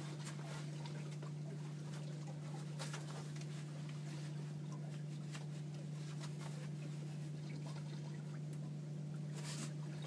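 Boat's outboard motor idling, a steady low hum, with a few faint clicks over it.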